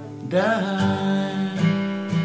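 Steel-string acoustic guitar strumming a G chord, struck about a third of a second in and re-strummed a few times so the chord keeps ringing, with a man singing the word "died" as it lands.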